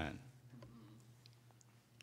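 Faint, scattered small clicks of handling at a pulpit, over a low steady hum.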